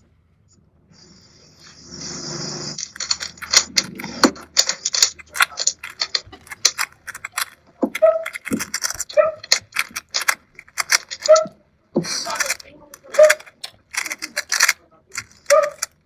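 Plastic 3x3 speedcube being turned fast during a solve: a dense run of quick clicks and clacks that starts about three seconds in, with a brief pause near the end.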